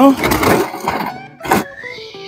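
Plastic oil drain pan dragged across a concrete floor into place under the truck, with a single sharp knock about one and a half seconds in.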